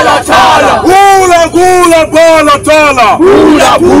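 Voices chanting loud, rhythmic 'ooh, bala-tala' calls in unison, each call rising and falling over about half a second.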